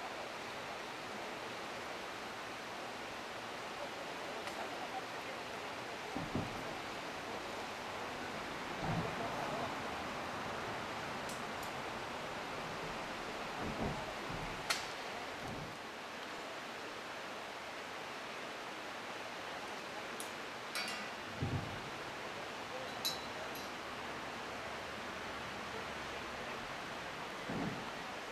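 Steady outdoor background noise, an even hiss, with a few faint knocks and short clicks scattered through it.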